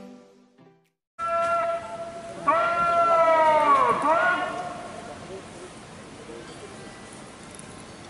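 A long, drawn-out shouted parade drill command: one voice held on a high, loud note for a few seconds that drops sharply in pitch as it cuts off. A low outdoor background hum follows.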